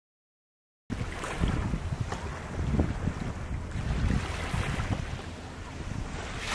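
Silence for about the first second, then wind buffeting the microphone over small waves washing on a beach.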